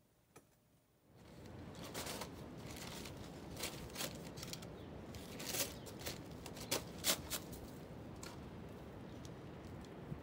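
Paper sacks of concrete mix being handled outdoors: rustling and a series of sharp crinkles and taps, starting about a second in after a near-silent moment.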